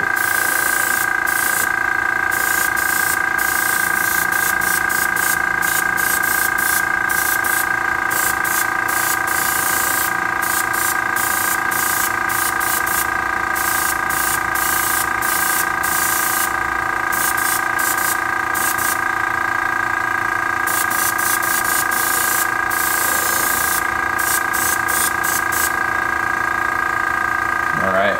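An airbrush spraying paint in many short on-off bursts of hiss as the trigger is worked. Under it runs the steady, constant-pitched whine of the airbrush compressor.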